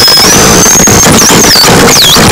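Harsh electronic noise from a patched live rig: a dense, very loud wall of noise. Above it, a thin high whistling tone holds steady, glides slightly upward, then dips and wavers about a second in.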